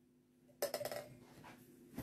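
Brief cluster of small clicks and rustling a little over half a second in, from a small object being picked up and handled, then a faint click near the end.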